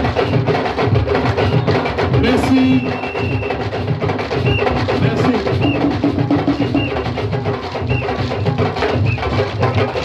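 Live traditional percussion: hand drums played in a steady, fast rhythm, the beat carrying on without a break.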